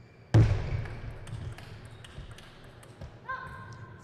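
A table tennis rally: a loud thump shortly after the start, then a run of short sharp clicks from the ball off bats and table. Near the end a held, high tone sounds for under a second.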